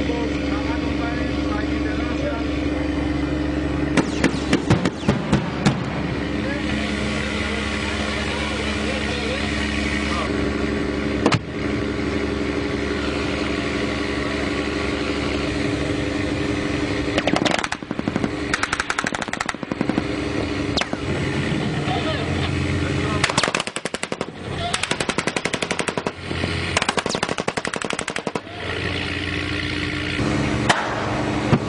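Automatic machine-gun fire in rapid bursts over the steady drone of a boat engine. A burst comes about four seconds in, a single shot near eleven seconds, then repeated bursts from about seventeen to twenty-eight seconds.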